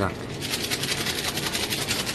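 A fast, even run of scratchy rasping clicks close to the microphone, about ten a second, starting about half a second in.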